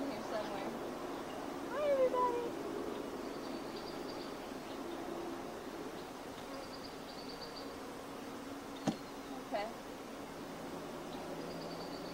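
Honey bees humming steadily around an open hive. A short voice-like sound rises and falls about two seconds in, and a single sharp knock comes near nine seconds.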